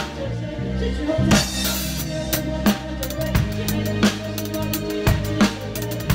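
Rock drum kit played live with a band: a steady kick-and-snare backbeat with a strong hit about every second and a third, and a crash cymbal ringing out about a second in, over the band's sustained bass and accompaniment.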